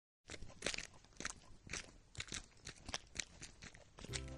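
Faint crunching footsteps of several people walking on a dirt path, unevenly spaced at about three a second.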